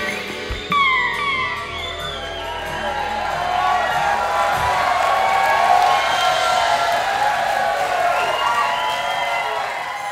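A live rock band ends a song with drum hits and a held chord, which stops about halfway through, while the audience cheers and whoops.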